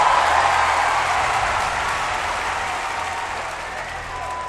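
Arena crowd applauding a just-finished horizontal bar routine, loudest at the start and slowly dying away.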